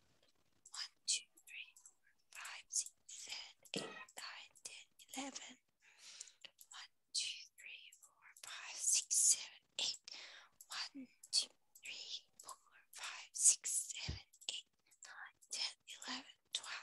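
A child whispering quietly to herself in many short, breathy bursts, without voiced speech.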